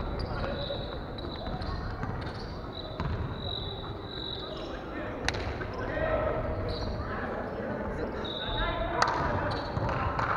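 Volleyballs being hit and bouncing on a wooden gym floor, with two sharp smacks about five and nine seconds in, over indistinct voices echoing in the large hall.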